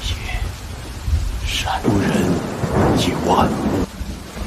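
Steady rain with deep thunder rumbling, swelling louder through the middle, from an animated series' soundtrack.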